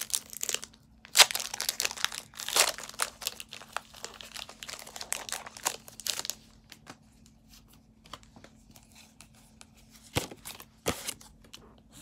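Foil wrapper of a Pokémon TCG booster pack crinkling and tearing as it is opened, busy for the first six seconds or so. After that come quieter handling noises with two sharp clicks near the end as the cards are taken out.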